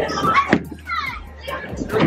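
Children's excited voices and squeals, with a sharp knock about half a second in.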